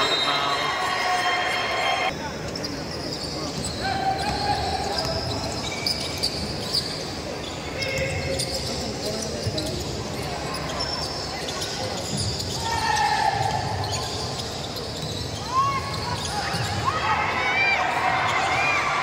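A basketball bouncing on a hardwood court during live play, with players' and spectators' voices echoing in a large gym. A few short rising squeaks near the end, from sneakers on the court.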